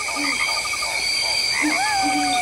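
Night-forest animal sound effects: a layered bed of steady insect trilling, a rapid pulsing chirp about ten times a second in the first part, and short low calls that recur. Near the end a long whistling call rises briefly, then slowly falls.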